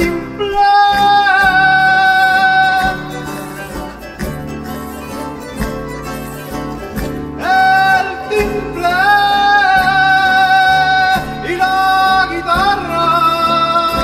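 Canarian folk ensemble of guitars and other plucked strings strumming a dance tune while a voice sings long held notes. The singing is loudest in the first few seconds and again from about eight seconds in, with a quieter stretch of accompaniment between.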